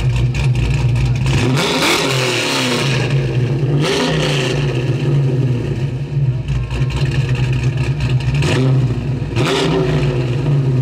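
A car engine running steadily, with three brief swells where the pitch sweeps up and down: about two seconds in, at four seconds, and again near the end.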